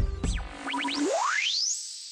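Background music with a beat cuts out early on, followed by an editing transition effect: a few quick rising chirps, then one fast rising sweep that ends on a held high tone.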